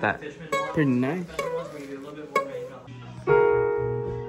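A loud chord struck on a Williams digital piano about three seconds in, held and ringing as it slowly fades. Before it, a voice slides up and down in pitch with no words.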